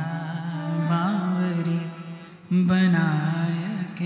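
A man singing a slow, wordless Indian classical vocal line into a microphone, holding long notes with wavering, ornamented bends, and breaking off briefly a little past halfway before resuming.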